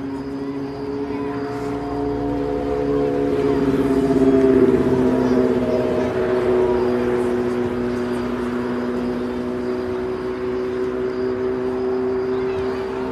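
A steady engine drone made of several held tones. It swells to its loudest about four to five seconds in, and its pitch dips slightly there, as a passing vehicle's does.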